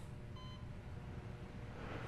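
A single short electronic beep from a patient monitor, about half a second in, over a low steady hum.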